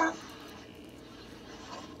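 The end of a spoken word, then quiet room tone: a faint, even background hiss with no distinct sound in it.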